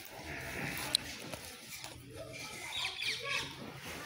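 Farmyard background: a faint murmur of distant voices, a sharp click about a second in, and a cluster of short high chirps near the end.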